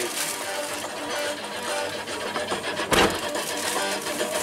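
Guitar music from the van's radio, with one sharp thump about three seconds in.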